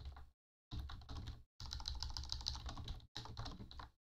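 Typing on a computer keyboard: rapid runs of keystrokes in about four bursts, with short pauses between them.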